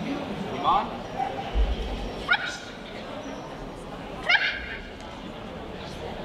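A dog giving three short high-pitched yips, each rising in pitch: a faint one about a second in, then louder ones at about two and four seconds.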